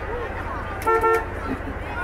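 A car horn tooting twice in quick succession about a second in, over the voices of a crowd.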